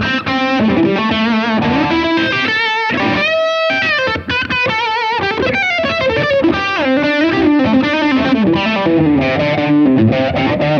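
Electric guitar playing a single-note lead through a Blackstar St. James EL34 valve amp, taken direct through the amp's built-in cab simulator rather than a miked speaker. The line moves through quick runs with string bends and vibrato, with a held, wavering note about three seconds in.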